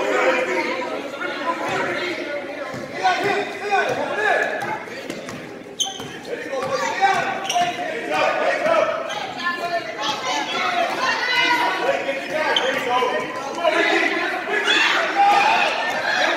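A basketball bouncing on a gym floor during play, mixed with the voices of spectators and children echoing in a large gym.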